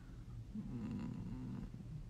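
A man's low, drawn-out closed-mouth hum, wavering in pitch, as he thinks over his answer; it starts about half a second in and fades just before the end.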